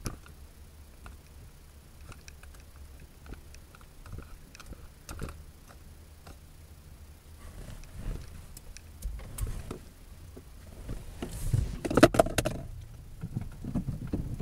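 Car coasting downhill with its engine switched off: low tyre and road rumble with scattered light knocks and clicks from the body and suspension. The knocks grow denser and louder in the second half, with a loud cluster near the end. This is the rear noise being listened for.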